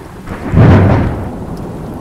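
A roll of thunder over steady rain: it swells up about half a second in, is loudest around the middle, and dies away through the second half.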